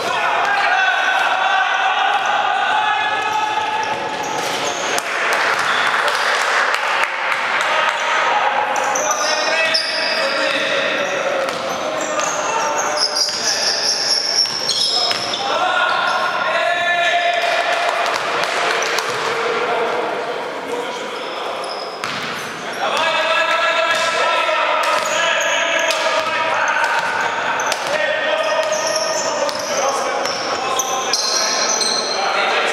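Basketball being dribbled and bouncing on a gym floor during a game, with raised voices calling out now and then, all echoing in a large sports hall.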